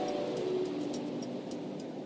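Electronic intro music sting: held tones slowly sliding down in pitch over a noisy wash, with faint clicks, fading away.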